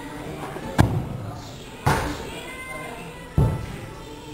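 A football kicked hard and striking the goal's crossbar: three sharp thuds about a second or more apart, each with a short echo in a large indoor hall. Background music runs underneath.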